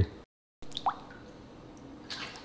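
A single small water plop at the surface of the gar tank about a second in, a short drip-like blip rising in pitch, over faint background noise.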